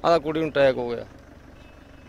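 A man speaking Punjabi for about a second, then a short pause with only faint, steady background noise.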